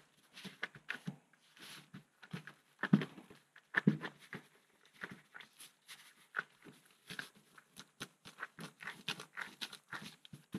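Gloved hands kneading and rolling a wet concrete mix packed with Cheerios into a log: irregular short squishing and rubbing noises from the lumpy mix and rubber gloves, with a couple of louder soft thuds about three and four seconds in.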